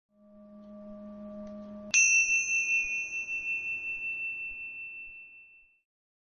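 A soft low tone swells for about two seconds, then a bright, high chime strikes and rings on, fading away over the next few seconds.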